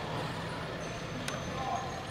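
Steady background noise of a large indoor practice facility with a low hum, a single faint click about halfway through and a distant voice near the end.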